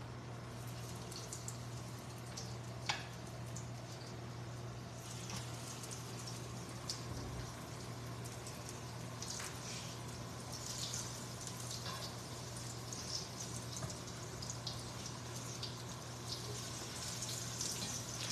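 Stuffed zucchini blossoms frying gently in shallow oil: a faint, soft crackle that thickens after about five seconds, over a steady low hum. A single click of metal tongs comes about three seconds in.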